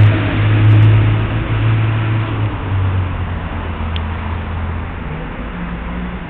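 Street traffic: a motor vehicle's engine running close by with a steady low hum, its note dropping slightly about two and a half seconds in as it fades away.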